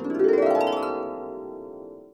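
A short musical chord that swells in and slowly fades over about two seconds, a transition sting marking the break between chapters.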